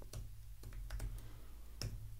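Computer keyboard typing: a handful of light, separate key clicks, with a slightly louder keystroke near the end.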